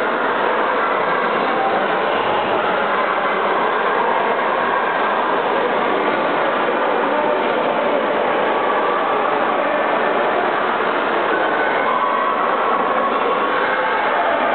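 Steady, echoing din of an indoor swimming pool hall: splashing water and distant voices blend into one even wash of noise.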